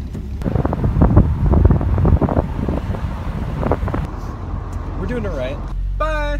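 Wind buffeting the microphone in an open convertible as it drives, in irregular gusts that are loudest in the first few seconds, over a steady low rumble of engine and road noise. A brief voice sounds near the end.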